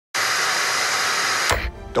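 Television static: a steady white-noise hiss that cuts off abruptly about one and a half seconds in, leaving a low hum.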